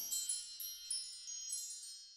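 Closing shimmer of a programme's intro jingle: high, chime-like tinkling notes with a few light strikes, fading out toward the end.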